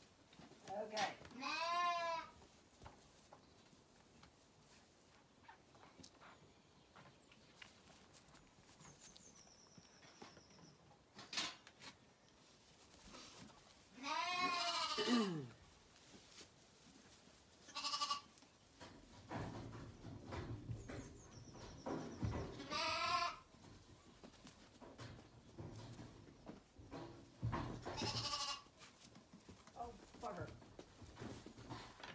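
Zwartbles lambs bleating: about six separate wavering bleats, the loudest a long one about halfway through that drops in pitch.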